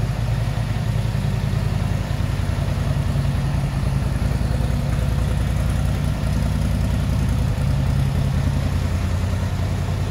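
2018 Polaris Sportsman 850 ATV's parallel-twin engine idling steadily.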